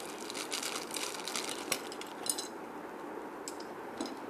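Plastic packaging of a small toy being handled and unwrapped. It crinkles in clusters of crackles in the first two seconds, with a few more later, over a steady hiss.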